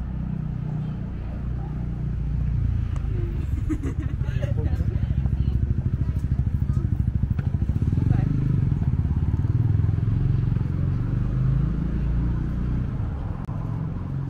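A motor vehicle's engine running close by with a deep, pulsing rumble, growing louder to a peak a little past halfway and then easing off as it passes. Passers-by are talking underneath it.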